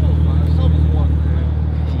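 Steady low drone of BMW car engines idling, with faint voices over it.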